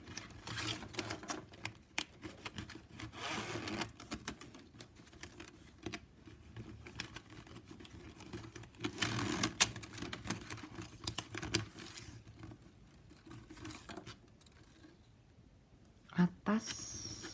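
Plastic strapping band being threaded and pulled through a woven piece by hand: rustling and scraping of the stiff plastic strips with many small clicks, coming in bursts and quieting near the end.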